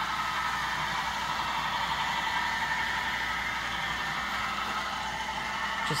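Steady mechanical whirring hum with a faint high whine, unchanging throughout.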